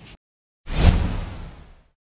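A whoosh sound effect: one rush of noise that swells quickly about two-thirds of a second in and fades away over about a second, after a moment of dead silence.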